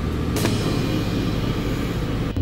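Steady low rumble with faint background music.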